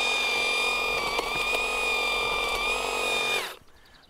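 EGO Power+ HT6500E cordless hedge trimmer running at a steady whine while its blades cut into thicker spruce branches, with a couple of clicks and a brief dip in pitch about a second in as a branch is cut. The motor cuts off abruptly shortly before the end.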